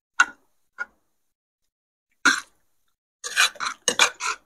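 Eating with metal spoons and forks from ceramic plates: short, separate clicks and scrapes, a few spread out and then a quick run of them near the end.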